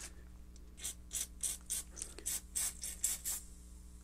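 Aerosol oven cleaner sprayed from the can in a quick run of short hissing spurts, about four a second, starting about a second in.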